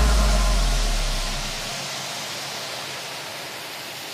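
Breakdown in an electronic dance track: a deep sub-bass note dies away over the first second and a half, leaving a steady white-noise wash that slowly fades.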